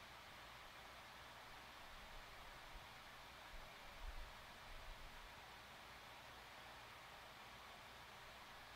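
Near silence: a faint steady hiss of room tone, with a few faint soft bumps about halfway through.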